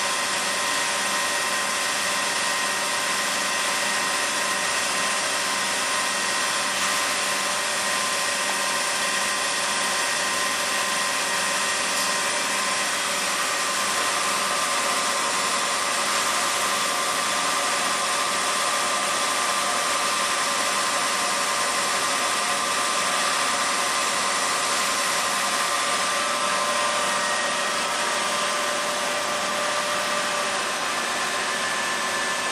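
Okamoto IGM-15NC CNC internal grinder running with coolant spraying inside its enclosure: a steady high whine with several held tones over an even hiss.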